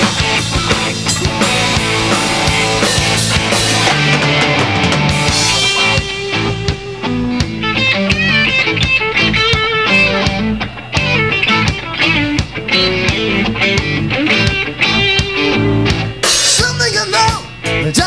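Live rock band playing an instrumental passage: electric guitars and bass guitar over a drum kit.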